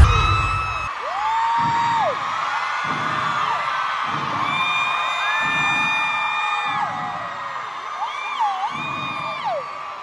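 Live pop concert heard from the crowd: amplified music with a heavy bass beat about once a second, and fans screaming long high-pitched whoops over it. A loud boom sounds right at the start.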